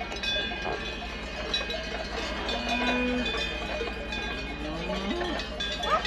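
Many cowbells on a moving herd of cattle, clanking and ringing irregularly and overlapping. A short low call from the herd comes about two and a half seconds in, and another call rises and falls in pitch about five seconds in.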